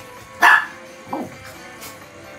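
A small dog gives one loud, sharp bark about half a second in, then a shorter yelp that falls in pitch about a second in, during rough play between dogs. Guitar music runs underneath.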